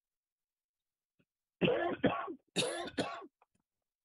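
A person clearing their throat twice: two short bursts about a second apart, each well under a second long.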